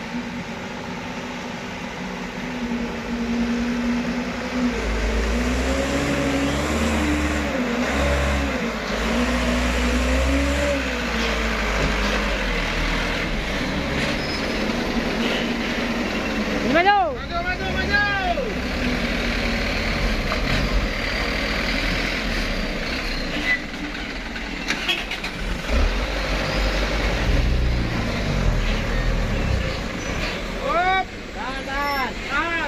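Truck engine running under load, its pitch rising and falling, over a heavy low rumble. A brief warbling high-pitched sound cuts in about halfway through.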